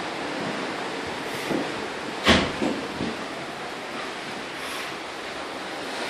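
Steady rush of wind and sea noise on a phone microphone, with one sharp knock a little over two seconds in and a few lighter knocks around it.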